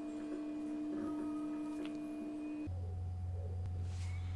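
A steady humming tone held at one pitch, which switches to a deeper hum a little under three seconds in.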